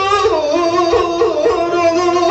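Live Turkish folk music (türkü): an ornamented melody line with vibrato, stepping between held notes, over faint low thumps.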